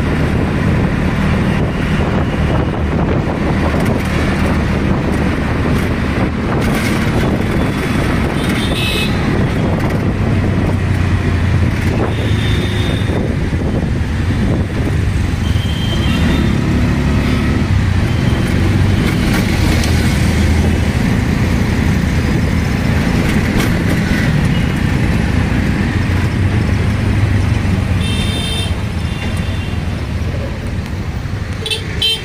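Auto-rickshaw engine running steadily while moving through traffic, heard from inside the open cabin, with horns honking briefly several times around it.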